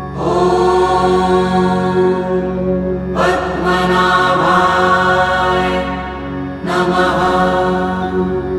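Devotional Sanskrit mantra chanting set to music over a steady drone, in three long, sustained sung phrases that start near the beginning, about three seconds in and near seven seconds in.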